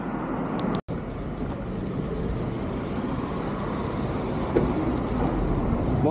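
Road traffic: a steady rumble of passing cars, broken by a momentary gap a little under a second in.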